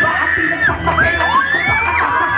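Beatboxing into a cupped microphone through a PA: deep bass pulses under rising and falling scratch-like glides.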